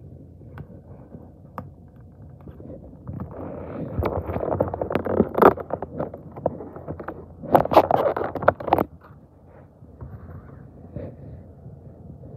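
Cardboard door of a chocolate advent calendar being picked at and torn open by hand, with scraping and rustling in two busy spells, about four seconds in and again about eight seconds in.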